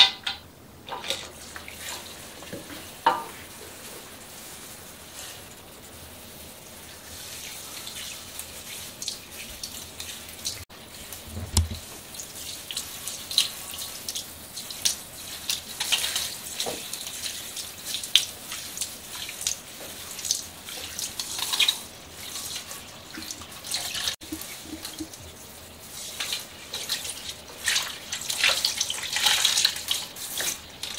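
Water from a handheld salon shower sprayer running over long hair and splashing into a shampoo basin, with hands working through the wet hair. The first few seconds hold scattered wet splashes and drips, and the spray turns steadier after that.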